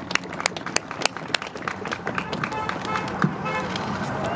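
A small crowd clapping, the claps thinning out over the few seconds, with a few faint voices calling out.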